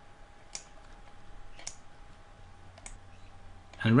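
Computer mouse clicking: three sharp single clicks about a second apart.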